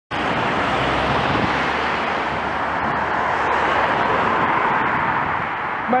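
Steady rush of wind and road noise on a camera moving along a street, with no distinct engine note.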